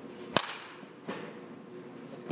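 A baseball bat striking a ball in a swing: one sharp, loud crack with a short ring. A fainter knock follows about a second later.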